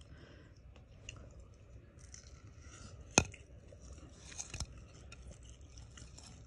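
Faint chewing of crispy fried fish, with one sharp click about three seconds in.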